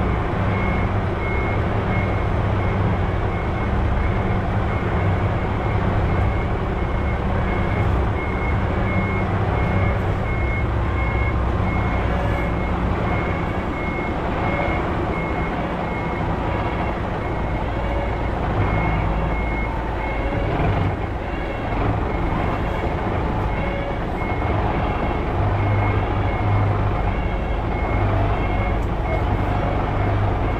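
Reverse alarm on a semi-trailer truck beeping about twice a second at one steady pitch as the rig backs up, over the low rumble of its diesel engine.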